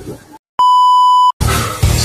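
A single steady electronic beep, one pure tone held for just under a second and cut off sharply, with a moment of dead silence before and after it. Background music comes in right after.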